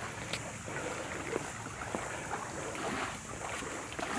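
Calm seawater lapping gently against shoreline rocks, a steady soft wash with a few faint knocks and scuffs.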